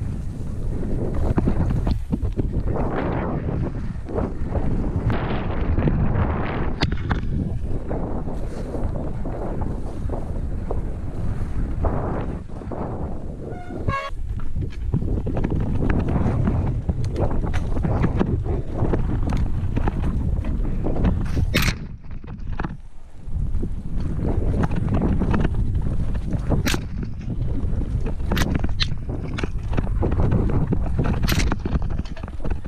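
Mountain bike descending a muddy forest trail, heard from a helmet camera: wind buffeting the microphone over tyre noise on dirt, with frequent rattles, clicks and knocks from the bike over roots and bumps.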